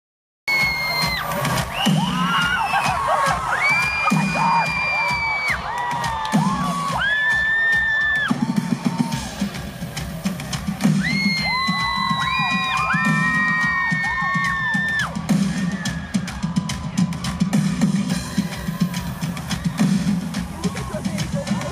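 Live drums playing a beat on a drum kit and drums at the front of the stage, with a concert crowd screaming over them in long, high, held screams.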